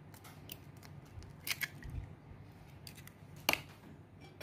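A raw egg's shell being pulled apart by hand over a ceramic bowl: a few small, sharp shell clicks and crackles, with the loudest click about three and a half seconds in.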